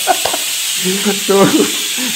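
Food sizzling in a frying pan on the stove, a steady hiss, with brief laughter and talk over it.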